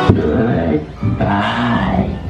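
Dark-ride audio from the E.T. figure's scene: the orchestral ride music breaks off with a sharp click just after the start, and a recorded voice speaks over what remains of the music.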